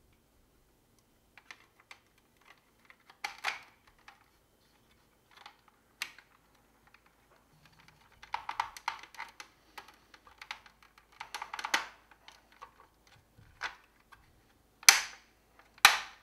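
Hard plastic parts of a 1984 Hasbro G.I. Joe Cobra Rattler toy clicking and rattling in irregular clusters as the underbelly panel's tabs are worked into the fuselage, then two sharp, loud snaps near the end as the tabs snap-fit into place.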